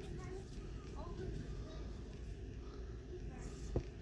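Faint voices in the background while a stack of trading cards is handled, with one sharp tap of the cards a little before the end.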